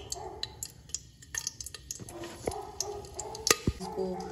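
A metal spoon clinking and scraping in a steel pressure cooker as whole spices are stirred through the ghee. There are scattered light ticks and one sharper, louder clink about three and a half seconds in.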